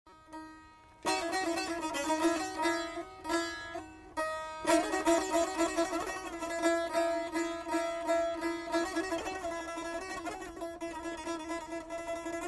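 Azerbaijani saz played solo as an instrumental introduction: quick plucked and strummed notes over a steady ringing low note. It begins about a second in and pauses briefly near four seconds before going on.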